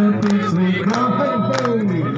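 Group of people singing and calling out along to a Christmas carol, over backing music with a steady beat.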